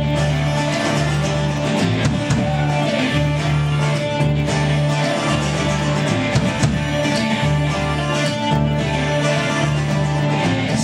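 A live acoustic string band playing an instrumental passage: upright double bass plucking a steady, evenly pulsing bass line under banjo and guitar.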